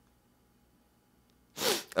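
Near silence, then about one and a half seconds in a single short, loud human sneeze.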